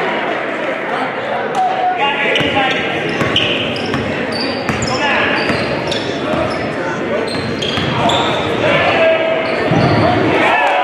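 Basketball dribbled on a hardwood gym floor amid crowd chatter echoing in a large gym, with short high sneaker squeaks through the middle.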